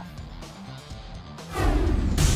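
Background music playing under the highlights, then about one and a half seconds in a sudden loud whoosh-and-boom transition sound effect.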